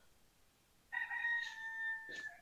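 A rooster crowing once: a single long, nearly level call that starts about a second in.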